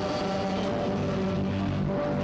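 Accordion music: held chords that sustain and shift without a break.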